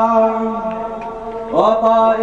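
Arabic wedding song in a chanting style: a man's voice holds one long, steady sung note that fades about halfway through, then a new phrase swoops up into the next note near the end.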